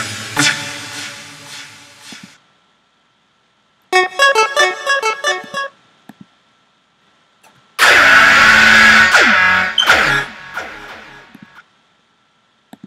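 Sylenth1 software synthesizer presets played one after another: decaying plucked notes, a pause, a quick run of short notes, then a loud, noisy sustained sound with a falling pitch glide that dies away near the end.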